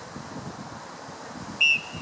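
A referee's whistle gives one short blast about a second and a half in.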